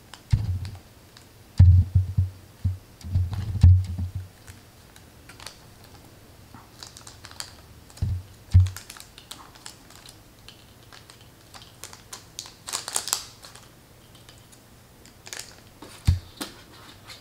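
Handling noises while a sachet of clay-mask powder is worked over a paper bowl on a tray. Dull thumps and taps come in clusters through the first four seconds and twice about eight seconds in. Light clicking and crinkling of the packet follows.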